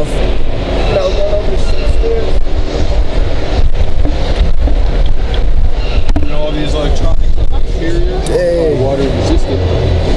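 A 2018 Jeep Wrangler Rubicon Unlimited's 3.6-litre six running as it drives a small demo track with its roof off: a steady low rumble with frequent knocks and rattles from the ride.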